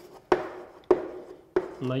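Chalk writing on a blackboard: two sharp taps as the chalk strikes the board, each trailing off briefly, about half a second apart.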